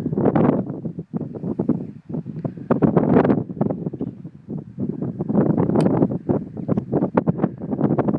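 Wind buffeting the microphone in uneven gusts, loud and rumbling.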